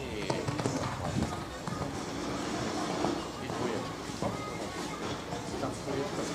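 Indistinct talking with faint background music.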